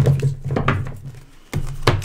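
Tarot cards being handled and shuffled close to the microphone: a run of soft, irregular clicks and rustles over a steady low hum, with a brief lull near the end.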